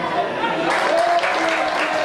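Stadium crowd at a rugby league ground clapping amid spectators' voices, with the applause picking up about 0.7 s in.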